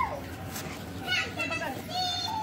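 Children's voices calling and talking in the background, with high-pitched calls in the second half.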